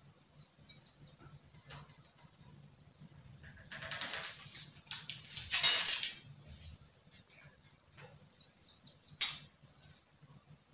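A small bird chirps in quick series of short falling notes, once near the start and again near the end. Between them come two louder bursts of rustling handling noise, the louder about six seconds in, and a sharp click just after nine seconds.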